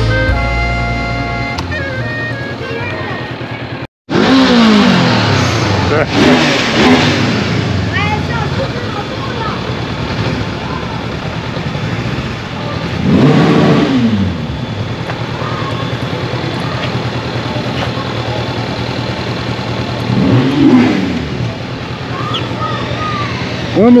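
Brass music for the first few seconds. Then a motorcycle engine runs at low speed in a town street, and its pitch rises and falls in several short revs about four, six, thirteen and twenty seconds in.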